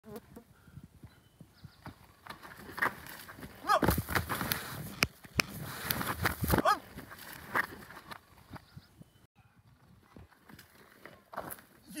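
A mountain unicycle's tyre and frame knocking and scraping as it is ridden and hopped down a rock slab. The impacts are loudest in a cluster through the middle, with two short squeaks among them.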